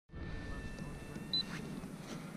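Handling noise on the camera's microphone, a low rustling rumble as it is touched, with a faint steady high whine and a single short, high electronic beep a little over a second in.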